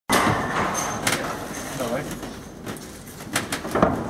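Rustling and a few sharp knocks as wrapped packages are handled inside a hidden compartment, with brief muffled voices.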